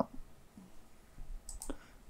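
Two faint computer mouse clicks close together about a second and a half in.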